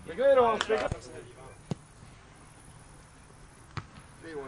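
A man shouts briefly, then a football is kicked with a sharp thud, followed by two lighter knocks later on.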